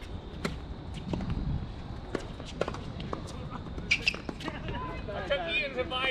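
Tennis ball struck by rackets and bouncing on a hard court during a rally: a series of sharp, irregularly spaced pops. Voices and laughter come in near the end.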